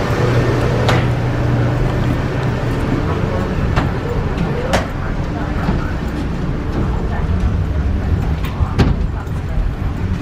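Steady low hum and rumble of airport and aircraft machinery heard inside a jet bridge, with a few sharp knocks, likely footfalls on the bridge's metal floor plates, and voices in the background.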